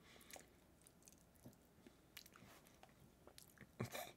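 Near silence with faint mouth sounds: small scattered clicks and smacks as a man swallows after a sip of a drink.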